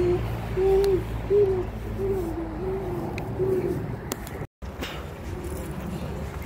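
A child blowing a run of short, soft, owl-like hoots through a hand held to the mouth, about six notes at one low pitch that stop after nearly four seconds.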